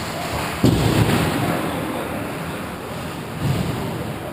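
A sudden heavy thud with a low rumble dying away about half a second in, and a lighter thump near the end, from hockey play on the ice (a hit or puck against the rink boards). Behind it the steady hollow noise of the rink during play.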